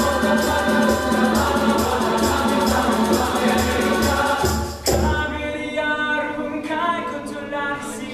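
Mixed high school choir singing an Indian film song, with conga drums and a shaker keeping a steady rhythm. About five seconds in the percussion cuts off and a solo male voice sings held notes over the choir.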